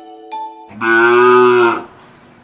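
The last bell-like notes of a short musical jingle, then a single loud cow moo lasting about a second.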